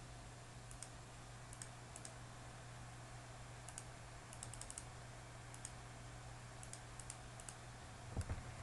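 Faint, scattered computer mouse clicks, a few in quick succession near the middle, as the paint bucket tool fills areas in Photoshop. A low steady hum runs underneath.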